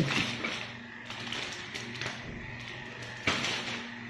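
Plastic kit bags and paper being handled with a soft rustle, and one sharper tap or knock about three seconds in.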